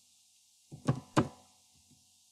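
Keys struck on a computer keyboard while typing a short word: a few sharp, loud keystrokes about a second in, then a couple of faint ones near the end.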